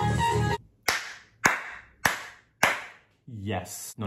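An electronic dance track with singing cuts off abruptly, then four sharp hand claps follow about 0.6 s apart. A man's voice starts near the end.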